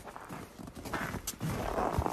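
Footsteps crunching and scuffing on packed snow, irregular and fairly quiet, with low rumble.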